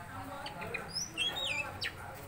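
Oriental magpie-robin singing a short phrase of clear whistled notes about a second in, several of them sliding down in pitch.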